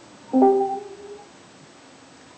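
Discord app notification chime: one short electronic chime of two notes, the second note higher and held longer, sounded as the call connection is dropped and rejoined.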